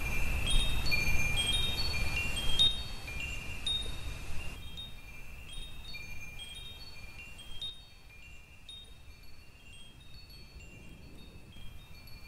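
High chimes ringing at random in loose, overlapping notes, slowly fading away.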